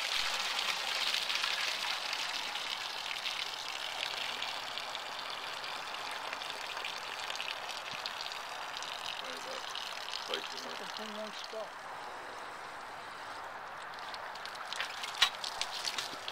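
Water gushing out of the bottom outlet of a Ford Model A radiator onto grass as it drains in a timed flow test, the stream tapering off over about ten seconds to a trickle; the radiator is a plugged one. A few sharp clicks near the end.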